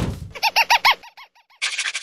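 Sound effects for an animated logo. It opens with a sudden hit and a falling whoosh, then a quick run of cartoon monkey hoots that rise and fall in pitch, about ten a second, and trail off. A rapid, noisy rattle starts near the end.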